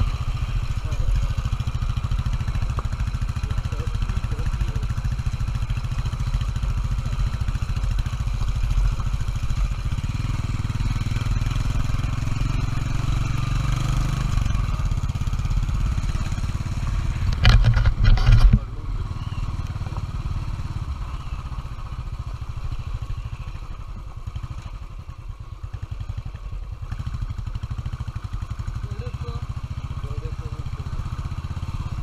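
Royal Enfield Bullet Electra 350 twin-spark single-cylinder engine running steadily as the bike rides a rough dirt track, with a loud clatter lasting about a second a little past halfway. The engine is quieter for a few seconds near the end.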